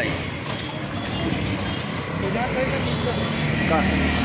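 Busy street ambience: a steady wash of traffic noise with a low rumble, under scattered background voices of passers-by.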